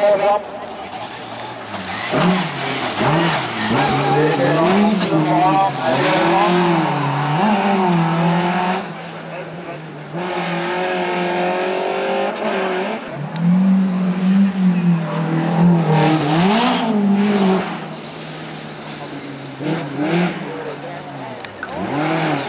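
Competition car engines revving hard on a hillclimb run. The pitch rises and drops again and again as the drivers accelerate, lift and change gear.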